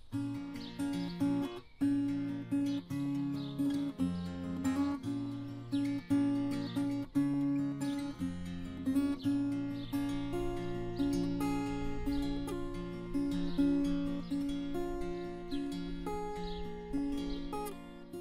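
Takamine acoustic guitar with a capo on the neck playing the instrumental intro of a song: chords and single notes picked in a steady rhythm, each note ringing on.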